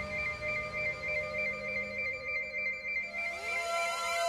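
Electronic synthesizer score: sustained tones over a low rumble, with a high note pulsing about four times a second. Rising synth sweeps enter about three seconds in.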